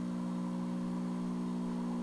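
A steady low hum with a stack of even overtones, unchanging in pitch and level.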